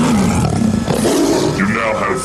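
A loud, roar-like sample in an early hardcore (gabber) DJ mix, heard while the kick drum pattern drops out.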